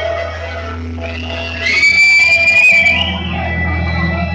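Loud live stage music over a sound system, with a steady low hum beneath; a lead line slides up and holds a long high note from about a second and a half in.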